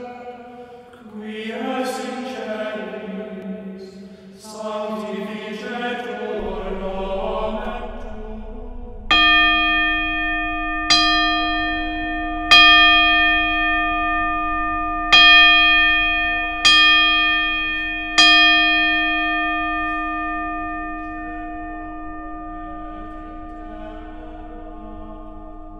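Polished brass table gong struck six times with a wooden gavel, each strike a sharp hit followed by a long, crisp and clear mid-range ring that carries over into the next and fades slowly after the last. Before the strikes, choral chanting music plays.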